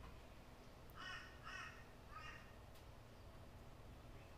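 Three short, faint bird calls, the first about a second in and each about half a second apart, over near-silent room tone.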